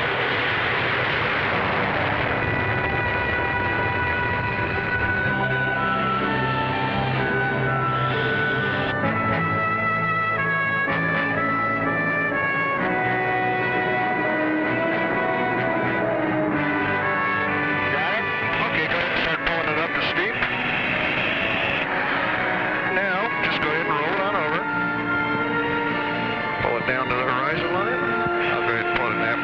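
Instrumental soundtrack music: a melody of held notes stepping up and down, with a noisier, fuller stretch near the start and again about twenty seconds in.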